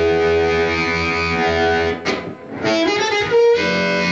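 Harmonica played through a Turner CX microphone with a 99S556 Hi-Z element: a held chord for about two seconds, a brief break, then a second long chord.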